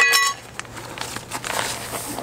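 A short metallic ring as a steel trowel is set down, then the crinkle and rustle of a bag of dry mortar mix being handled and tipped into a plastic bucket.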